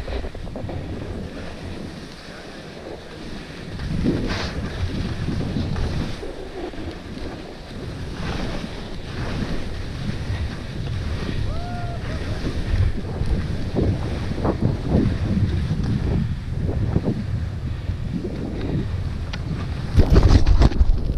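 Wind rushing over a ski camera's microphone during a fast run down a snowy slope, with skis hissing through soft snow in swells as they turn.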